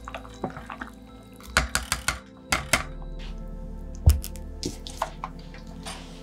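Spoon stirring soft cooked pumpkin and potato chunks in broth in a stainless steel pot: scattered knocks and clicks with liquid sloshing, and one heavier low thud about four seconds in. Soft background music runs underneath.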